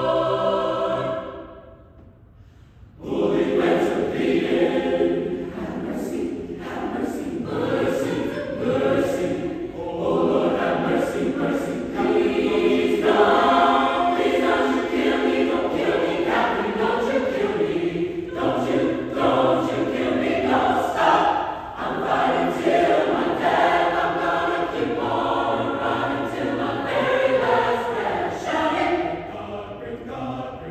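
Mixed choir of men's and women's voices singing a spiritual. A held chord cuts off about a second in and dies away in the church's reverberation. After a short gap the choir comes back in with a rhythmic passage full of crisp, clipped consonants.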